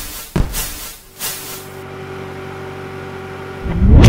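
Cinematic logo-intro sound effects: a sharp hit, a hissing whoosh, then a steady droning tone that swells near the end into a loud, deep boom.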